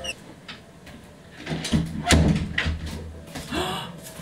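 An interior room door being opened and shut, with footsteps and a heavy thud about two seconds in.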